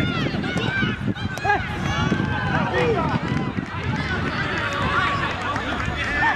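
Several voices shouting over one another during play: players and onlookers at a seven-a-side football match calling out as the ball is carried forward.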